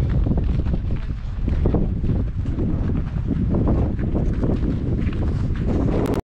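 Wind rumbling on the microphone, with irregular crunching footsteps in snow.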